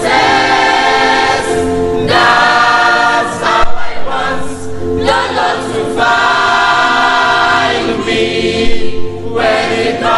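Youth choir singing a gospel song in harmony, with long held chords broken by short pauses between phrases.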